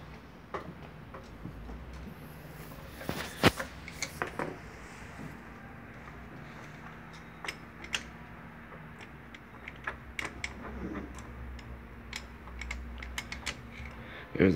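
Irregular small clicks and clinks of hand tools and parts as a mechanic works in a car's engine bay, with a louder cluster of knocks about three seconds in, over a faint steady hum.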